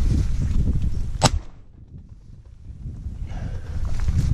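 A single 12-gauge shotgun shot about a second in, with wind rumbling on the microphone around it.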